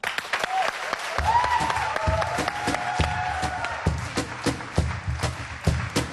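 Studio audience applauding as a folk band starts a song. A drum beat, a little over two strokes a second, comes in about a second in, with a high melodic line over it for the first few seconds.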